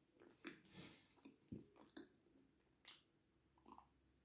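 Faint chewing of a mouthful of edible clay, heard as a scattered string of soft, short mouth clicks and smacks.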